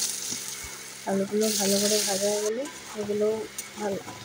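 Potato wedges frying in hot oil in a wok, a steady sizzle that grows louder for about a second in the middle.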